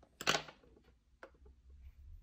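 Handling noise of small items on a cloth-covered table: a short rustling clatter about a quarter second in, then a single faint click near the middle.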